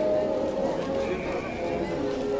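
Church bell tolling, its several tones lingering and slowly fading, with crowd voices underneath.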